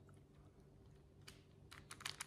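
Near silence, with a few faint clicks in the last second from a small plastic action figure being handled.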